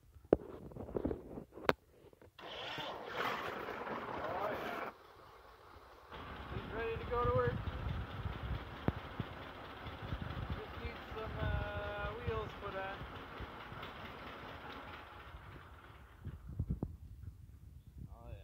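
John Deere 60's two-cylinder engine running at idle, heard close up. A stretch of louder rustling noise runs from about two to five seconds in.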